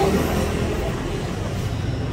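A steady low rumble with faint voices underneath.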